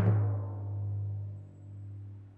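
Cartoon score: a low timpani rumble that swells twice and fades away.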